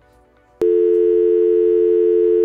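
Telephone dial tone used as a stand-by sound effect: a steady two-pitch hum that starts suddenly about half a second in.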